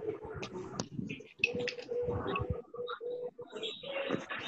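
A bird cooing: a low, held tone repeated with short breaks, starting about a second and a half in, over faint room noise and small clicks.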